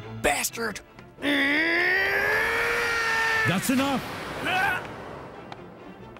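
A man's long yell, rising in pitch and then held for about two seconds, followed by two short grunts, over a dramatic orchestral score. It is a fighter's battle cry and effort sounds in a sword duel.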